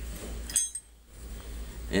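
A single brief metallic clink about half a second in, with a short ring, over a low steady hum.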